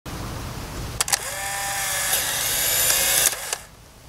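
Instant film camera firing: a double shutter click about a second in, then its motor whirring steadily for about two seconds as it drives the print out, ending with a click.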